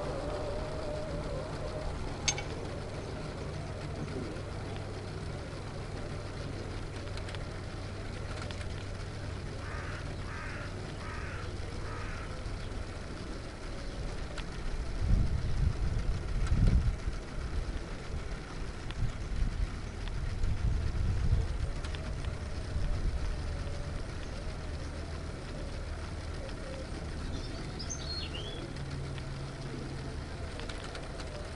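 Small K'nex solar-panel motors and plastic gear trains whirring steadily, heard close up from on board the buggy as it crawls along in low gear on weak sunshine. A few short bird chirps come in the middle and near the end, and low rumbling surges rise twice in the second half.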